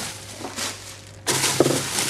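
Plastic produce bags rustling and crinkling as they are moved around in a refrigerator vegetable drawer, getting louder about a second in.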